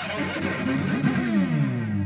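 The Galway Cello, made by Paul D'Eath, bowed with sliding glides in pitch that fall to a low held note near the end.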